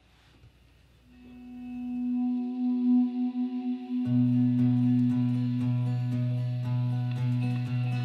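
Song intro on guitars: a held guitar note swells in about a second in, and about four seconds in a low note and steady rhythmic picking on acoustic guitar join.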